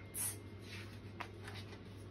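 Soft rustle of a paperback picture book being handled as its page is turned, with a faint click about a second in, over a low steady hum.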